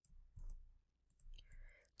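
Near silence with a few faint clicks of a computer mouse, about half a second in and again near the end.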